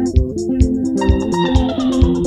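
Instrumental passage of Zimbabwean sungura-style band music: interlocking electric guitars and bass guitar over a kick drum beating about twice a second with hi-hat ticks. A note slides downward in the second half.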